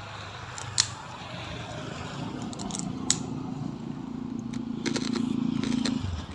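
A motor vehicle's engine running with a steady hum that grows louder over several seconds, with a few sharp clicks on top.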